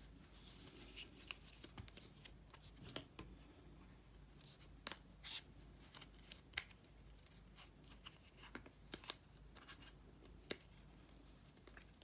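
Near silence, with faint scattered clicks and light rubbing from hands handling a small music player, its case and a cleaning cloth.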